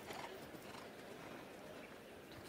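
Faint hoofbeats of a show jumping horse cantering on turf.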